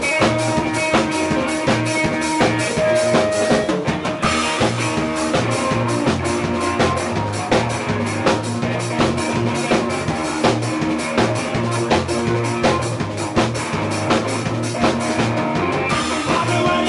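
A live rock power trio playing an instrumental stretch of a honky rock song: electric guitar and bass over a drum kit keeping a steady beat, with the drums up front.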